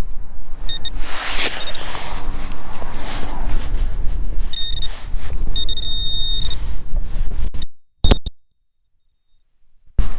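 Garrett AT pinpointer sounding its steady high tone in short and longer bursts as it is probed through the soil of a dig hole, homing in on a buried target, with wind buffeting the microphone and a scrape of soil about a second and a half in. The sound cuts out suddenly near the end, apart from one brief burst of tone.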